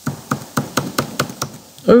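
Laptop buttons clicked rapidly and over and over, about five sharp clicks a second at an uneven pace, on a frozen computer that does not respond.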